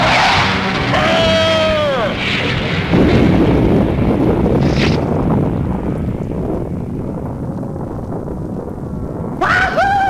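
Cartoon sound effects: a crash at the start, a falling, wavering tone, then a big explosion about three seconds in whose rumble fades slowly over several seconds.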